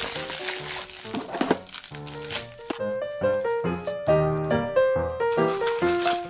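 A plastic postal parcel bag being torn open and crinkled by hand for the first two seconds or so, over background music with a melody of short notes that continues after the crinkling stops.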